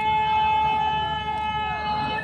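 A man's voice holding one long, high note in chanted recitation of devotional verse, steady in pitch and wavering slightly near the end.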